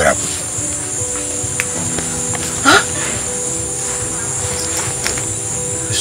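Background music of held low tones over a constant high-pitched insect chirring, like crickets. A short voice sound rises briefly about two and a half seconds in.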